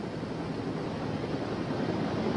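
Steady rushing noise of wind and sea, without any distinct events.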